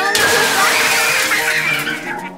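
A loud shattering, breaking crash lasting almost two seconds as the game's plastic ice blocks collapse through the tray. Children's excited shrieks run over it.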